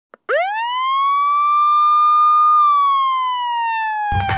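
An emergency vehicle siren wailing: a single tone that rises quickly from low to high within the first second, holds steady, then slowly falls away.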